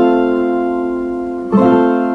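Ten-string resonator viola caipira in Cebolão E tuning strumming an F major chord, which rings and slowly fades. The chord is strummed again about one and a half seconds in.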